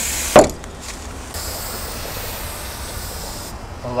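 Aerosol spray paint can hissing as paint is sprayed: a short burst at the start, then a steady spray of about two seconds that stops shortly before the end. A sharp knock, the loudest sound, comes about half a second in.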